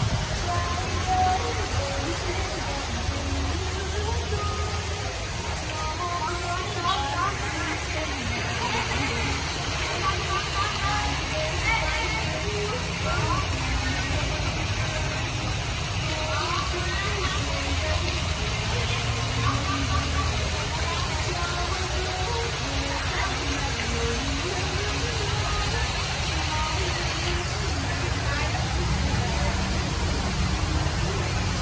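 Steady rushing noise of an artificial rock waterfall splashing into its pool, mixed with street traffic, with the indistinct chatter of people throughout.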